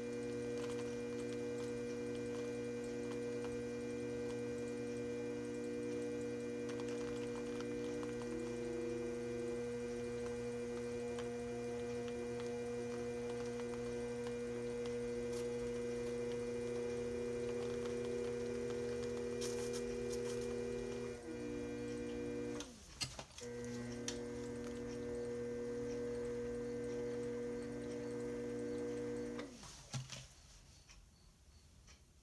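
Electric potter's wheel motor running with a steady whine, its pitch shifting a little as the speed changes. About 23 seconds in it drops sharply and comes back, and near the end it winds down and stops.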